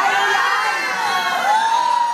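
A group of children shouting and cheering together in high voices, with one long held call near the end.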